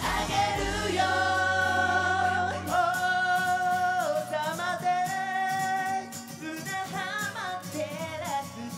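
J-pop idol song performed live: voices sing long held notes in harmony over the backing track. The deep bass drops out about three seconds in, leaving quick hi-hat ticks under the held notes.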